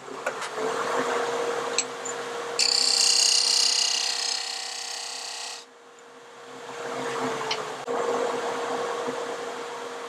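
Wood lathe running with a steady hum while a turning tool cuts into a soft wooden disc, the cut getting louder and higher-pitched for about three seconds in the middle.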